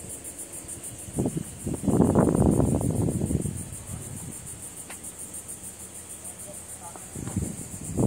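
Insects trilling outdoors, a steady high buzz that pulses evenly several times a second. About two seconds in, a loud rushing noise lasting over a second covers it, with a weaker one near the end.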